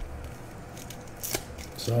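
Foil wrapper of a trading-card pack crinkling as it is pulled open by hand, with a few short crackles past the middle.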